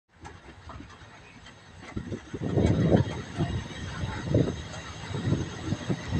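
Mariazellerbahn electric train rolling slowly, heard from on board: a steady low rumble with irregular louder swells and bumps, and a faint steady high whine.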